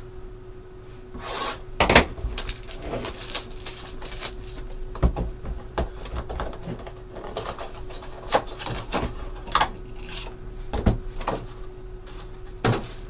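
A cardboard trading-card box being handled and opened by hand: cardboard rubbing and sliding, with irregular taps and knocks, the loudest about two seconds in.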